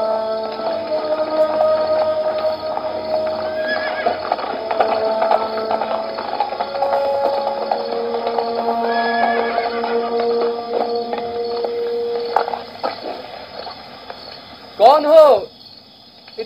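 Horses from a historical drama's soundtrack: hooves clip-clopping under sustained music notes, then a horse neighs loudly near the end.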